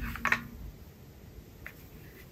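Sharp plastic clicks and taps from a car phone mount and its packaging being handled. A dull thump and a quick cluster of clicks come at the start, and one small click comes near the end.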